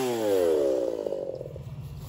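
Briscoe-built Echo 4910 two-stroke chainsaw coming off the throttle, its engine note falling steadily for about a second and a half as it winds down from high revs, then settling into a quieter idle.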